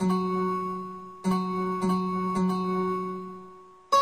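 Yamaha arranger keyboard played by hand: notes or chords struck about five times, each ringing and fading away, over a sustained low bass note.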